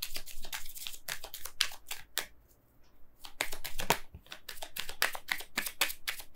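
Oracle cards being shuffled and handled: quick runs of sharp papery clicks, with a short pause a little over two seconds in before the clicking starts again.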